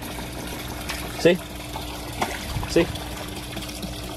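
Water trickling in a pool pond, with the steady hum of the pump that keeps the water circulating.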